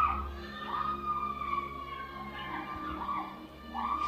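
Soft background music of sustained keyboard tones, with a faint wavering higher tone gliding over it.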